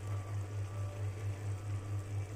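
A steady low hum that throbs evenly about six times a second, with a faint hiss above it.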